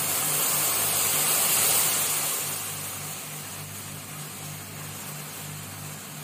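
Milk tea simmering in a steel pan on a kitchen stove, starting to foam: a steady hissing rush from the heat under the pan and the bubbling milk, loudest in the first two seconds and then easing to a steady level.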